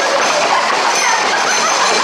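A tight pack of Camargue horses clattering at speed on a paved street, a dense steady rattle of many hooves, with a few brief shouts from people running alongside.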